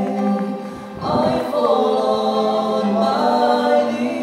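Two men singing a worship-song duet into handheld microphones. A held note fades just before a second in, then a new phrase starts with a rising line and sustained notes.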